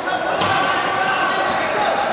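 Ice hockey play in a reverberant rink: voices calling out across the ice, with one sharp crack about half a second in and a few fainter knocks after it, typical of stick and puck hits.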